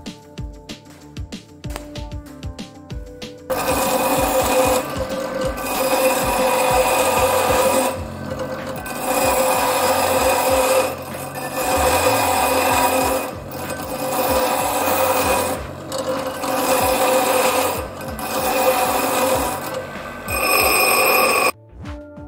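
Bench grinder grinding a short steel piece, a loud dense grinding noise that swells and dips every two to three seconds as the piece is pressed to the wheel and eased off, then cuts off suddenly near the end. Before it starts, lighter ticking and crackling.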